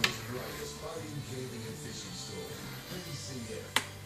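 Television broadcast of a cricket match playing in the background, with commentators' voices. Two sharp clicks, one right at the start and one just before the end.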